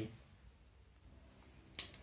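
Quiet room tone, with one short, sharp click near the end.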